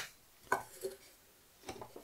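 Two brief soft knocks, about half a second and just under a second in, as a cardboard chip can fitted with a small circuit board is handled on a cutting mat.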